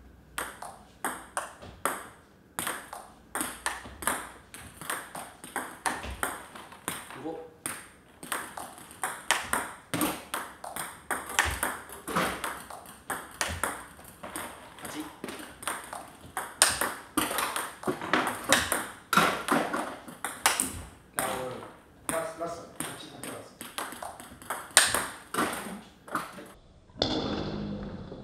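Table tennis rally: the celluloid ball clicks sharply off rubber-covered paddles and the table, about two to three hits a second, in a steady back-and-forth of backspin balls being attacked and returned.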